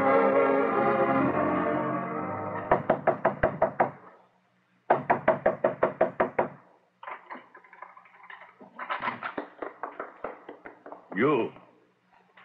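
A music bridge fades out, then a fist knocks rapidly on a wooden door in two bursts of about eight knocks each, with a short pause between them: a radio-drama sound effect of someone urgently calling at a door.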